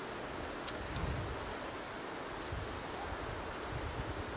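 Steady outdoor background hiss with uneven low rumbles of wind on the microphone.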